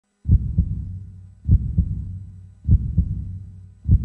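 Heartbeat sound effect: four deep double thumps, lub-dub, a little over a second apart, each trailing off over a low hum, scored to an animated club-crest intro.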